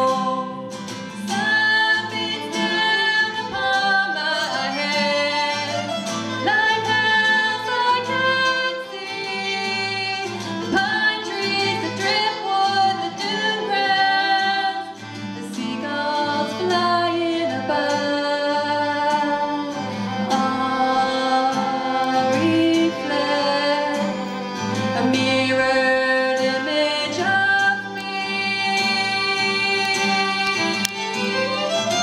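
A woman singing, accompanied by an acoustic guitar and a violin playing along.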